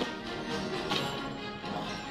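Quiet background music from the film's score, a bed of steady held notes.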